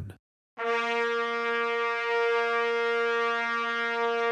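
A brass instrument holding one long, steady concert B-flat, scale degree 1 of the B-flat concert scale, starting about half a second in.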